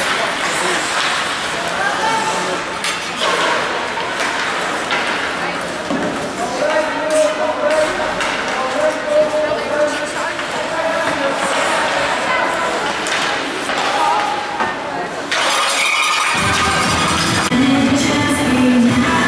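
Ice hockey play: sharp clacks of sticks and puck on the ice and boards, with players and spectators calling out. Near the end play stops and music comes in.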